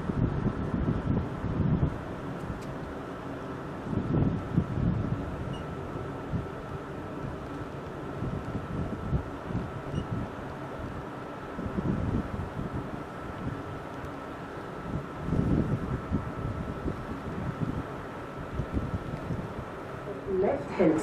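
Wind gusting against the microphone on the open deck of a moving river cruise ship, over the ship's steady low engine hum. A faint steady whine runs along and stops shortly before the end.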